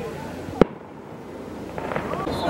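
A single sharp firework bang about half a second in.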